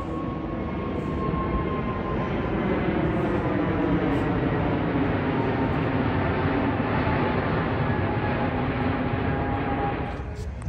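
Jet airliner flying low overhead: a steady engine roar that builds over the first few seconds, with whining tones that slowly drop in pitch as it passes. It cuts off abruptly at the end.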